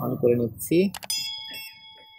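A mouse click about a second in, followed at once by a bell chime ringing with several clear tones that fade out over about a second: the sound effect of a subscribe-button and notification-bell animation.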